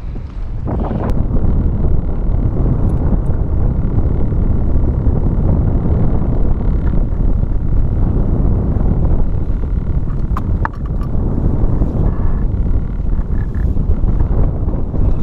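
Wind buffeting the microphone on an open boat deck at sea, a loud steady rumble that rises about a second in, with a few light clicks near the end.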